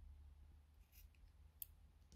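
Small scissors snipping through a strand of yarn: a couple of faint, short snips, the sharpest about one and a half seconds in.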